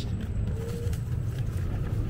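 Steady low rumble of an electric scooter in motion: its wheels rolling over the path and the air moving past the camera.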